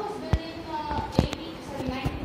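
Indistinct speech in a room, broken by a few sharp knocks, the loudest just past the middle.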